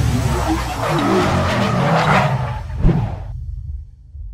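Sound effects for an animated logo intro: loud, noisy whooshes over a deep rumble, with a sharp hit a little before three seconds in, after which the sound dies away.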